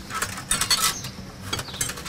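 Kitchen utensils clinking and rattling against metal and ceramic bowls on a cooking table, in a few short irregular clusters of clicks.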